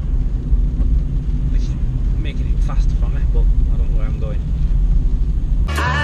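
Steady low road and engine rumble heard inside a moving car's cabin. Near the end, music with a beat starts abruptly.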